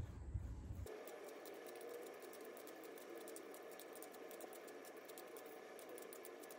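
Vegetable peeler scraping the skin off an apple, a faint, dense run of small scratches starting about a second in.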